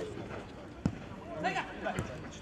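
A single sharp thud of a futsal ball being kicked, a little under a second in, followed by players shouting on the pitch.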